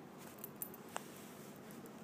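A few faint, sharp clicks from handling a wristwatch, over quiet room tone.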